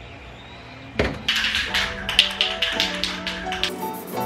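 A spray paint can being shaken, its mixing ball rattling in quick strokes, about five a second, over background music.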